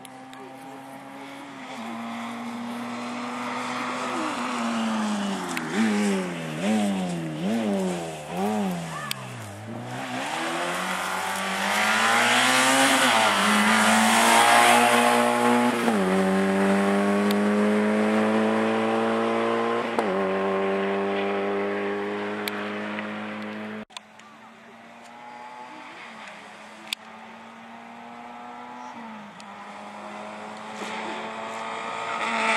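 Rally car engine passing on a dirt stage, revs swinging up and down quickly several times, then accelerating hard with two gear changes about four seconds apart. After a sudden cut, a second rally car's engine is heard more quietly, running steadily as it approaches.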